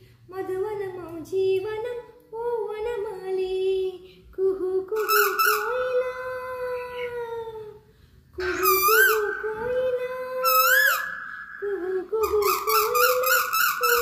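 A woman singing a Telugu song unaccompanied, in long held phrases broken by short breaths. Past the middle, a held note is twice broken by a quick upward swoop of the voice.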